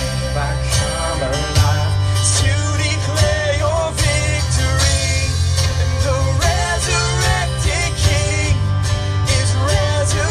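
Live worship band playing through PA speakers: drums keeping a steady beat over a bass line, with guitars carrying the melody.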